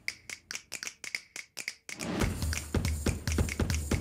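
Background music: a beat of quick, sharp snap-like clicks, with deep bass and kick drum coming in about halfway through.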